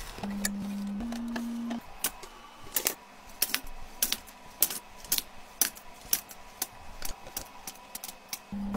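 A steady low hum for the first two seconds, rising a little in pitch about a second in and then stopping, followed by a string of light clicks and taps of hard items and containers being handled and set down, about one or two a second.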